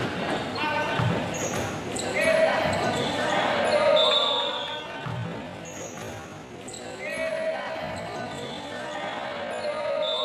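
Futsal ball being kicked and bouncing on an indoor court, with two low thuds about a second in and about five seconds in, amid players' and onlookers' shouts echoing in a large sports hall.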